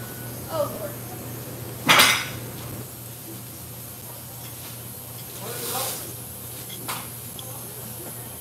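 A ceramic coffee mug set down on a table with one sharp clunk about two seconds in, then a lighter clink of a fork on a plate near the end, with faint voices in the background.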